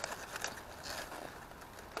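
Faint rustling and crackling of large, wet cauliflower leaves being pushed apart by hand, with a few light clicks.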